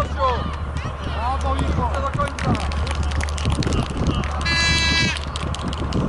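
Young footballers and onlookers shouting and calling across an open pitch. A high, held call or whistle-like tone cuts through for about half a second, roughly four and a half seconds in.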